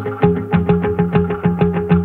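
Background music: a steady run of plucked guitar notes, about four or five a second.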